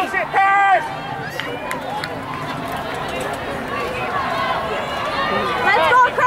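Spectators cheering runners on at a track race: a loud, high-pitched shout at the start and again near the end, with crowd chatter and faint distant voices between.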